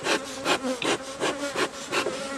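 Bee smoker's bellows pumped in quick puffs, about three a second, each a short rush of air, over the steady hum of honeybees on an open hive.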